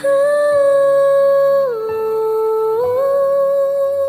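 Pop song passage: a singer holds a long wordless note, stepping down in pitch a little before halfway and back up near the end, over soft sustained backing.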